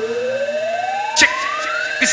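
Hardcore rave DJ mix at a breakdown: the kick drum and bass drop out, and a single rising synth tone climbs steadily in pitch, like a siren. There is one sharp hit about a second in.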